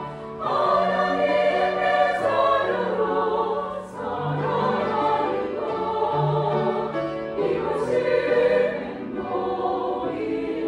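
Women's choir singing in sustained phrases with grand piano accompaniment, the sound dipping briefly at phrase breaks at the start, about four seconds in and near the end.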